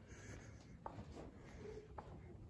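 Faint footsteps scuffing on a dry dirt floor, with a couple of soft clicks.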